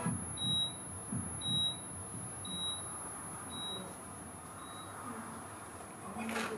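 Five short, high-pitched electronic beeps, about one a second, each with a faint low thud beneath it, growing fainter toward the end.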